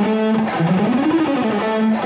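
Electric guitar playing a fast, individually picked single-note line in E major as a picking exercise. It starts on one note, climbs and falls back about half a second in, then settles on a note again, the phrase repeating about every second and a half.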